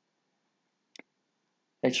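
A single faint computer mouse click about a second in, in otherwise near silence; a man starts speaking at the very end.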